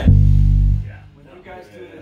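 Electric bass guitar playing one loud, low note that holds for just under a second and then stops sharply.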